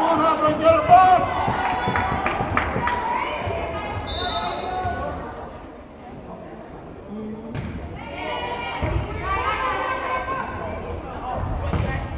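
Volleyball being struck during a rally: a series of sharp smacks of hands and forearms on the ball, most of them in the first few seconds, one more about halfway through and another near the end. Players and spectators call out and chatter around them.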